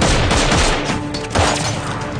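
Rapid gunfire in an action-film soundtrack, with a fresh loud burst about a second and a half in, over the film's music score.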